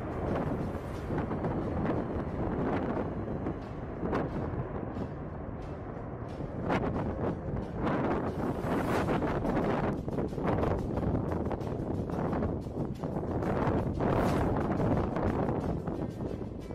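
Jet engine noise of a B-2 Spirit stealth bomber flying past, mixed with gusty wind buffeting on the microphone that makes the sound swell and drop.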